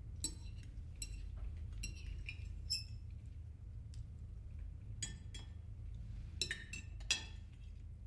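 Cutlery clinking and scraping on china plates at a meal: scattered light clinks, a few in the first three seconds and a cluster from about five to seven seconds in, the sharpest a little after seven seconds, over a low steady room hum.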